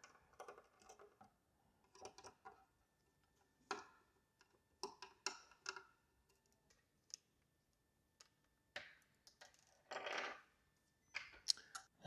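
Faint, irregular clicks and small metallic ticks of a small screwdriver backing screws out of a stainless steel plate, with light handling noise and a couple of short rasps later on.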